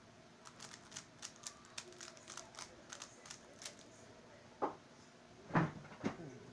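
Stickerless MF3RS 3x3 speedcube being turned quickly by hand: a fast run of light plastic clicks, about five a second, through the first two-thirds. Two louder knocks follow near the end, the second one the loudest.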